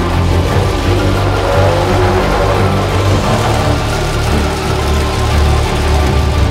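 Background music with sustained low notes throughout.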